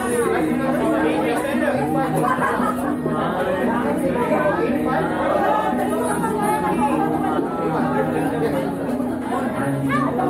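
Many people chattering at once, no single voice standing out, with music playing underneath that has a repeating low bass line.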